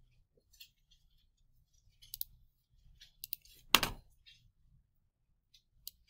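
Scattered light clicks and taps, a few close pairs, with one louder knock about four seconds in.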